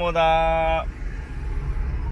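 Low, steady rumble inside a car's cabin, engine and road noise, under a man's voice holding one drawn-out vowel for most of the first second; after that only the rumble is heard.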